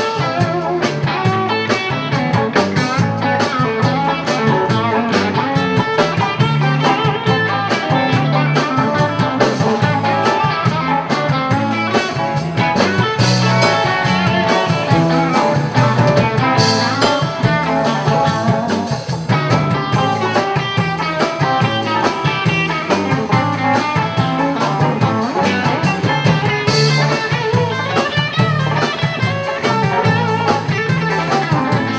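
Live electric blues band playing: electric guitars over electric bass and drum kit, in a passage without vocals.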